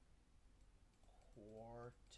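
Near silence with a low steady hum. About one and a half seconds in, a man's voice holds a brief, steady-pitched 'uh'.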